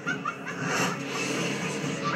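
Film soundtrack with background music and witches cackling as they fly past on broomsticks.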